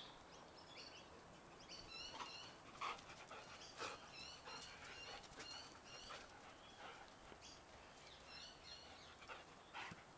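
A dog panting faintly, with a few short breathy bursts, against soft high chirping in the background.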